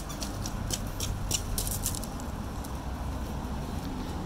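Light crunching of loose gravel underfoot: a scatter of short, crisp ticks, most of them in the first couple of seconds, over a steady low outdoor rumble.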